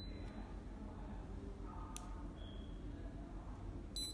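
Low steady electrical hum and room noise, with one faint click about halfway through. Right at the end the fingerprint padlock's buzzer gives a short high beep as it reads a finger.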